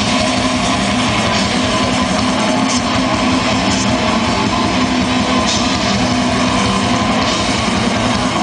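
Extreme metal band playing live at full volume: distorted electric guitars and bass over fast drumming, one dense, unbroken wall of sound.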